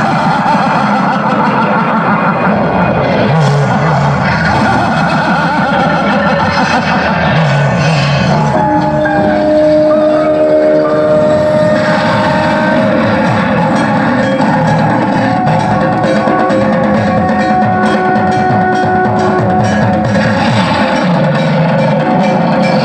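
Loud soundtrack music playing over a loudspeaker, dense and continuous, with a few long held notes about halfway through.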